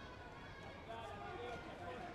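Indistinct voices calling out in a large sports hall, over a steady background murmur of the hall.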